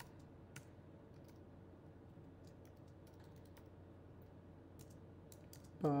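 Faint keystrokes on a computer keyboard, typed in short, irregular runs.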